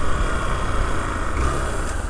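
Motorcycle engine running with wind and road noise, heard from on the bike as it slows down; a steady low rumble that eases slightly towards the end.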